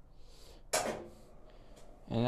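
A person's breath sound: a faint in-breath, then one sudden short burst about three-quarters of a second in, like a cough.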